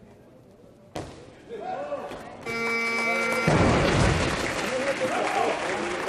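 A loaded barbell with bumper plates dropped onto the lifting platform about a second in, one sharp bang, after a completed lift. A short steady electronic tone follows, then loud crowd cheering and applause with shouting voices.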